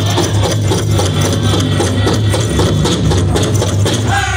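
Powwow big drum struck in a fast, steady beat by a drum group, several beats a second, with little singing over it.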